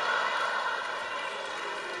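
Live theatre audience laughing: a steady crowd noise that swells up just before and eases off slightly.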